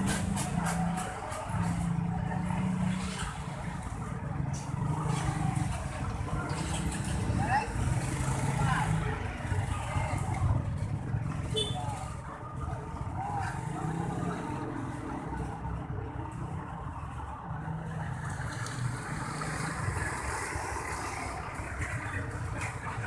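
Background noise of a vehicle running, with indistinct voices in the background. There are a few faint clicks near the start.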